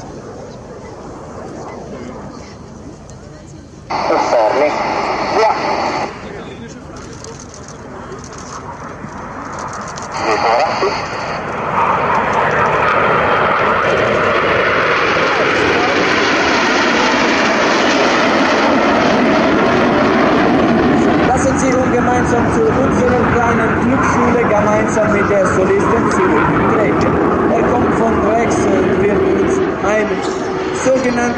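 Formation of Aermacchi MB-339 jet trainers flying overhead. Their turbojet noise builds from about twelve seconds in and stays loud to the end.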